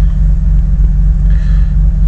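1989 BMW E30 325i's 2.5-litre straight-six idling soon after a cold start, a steady low rumble heard from inside the cabin.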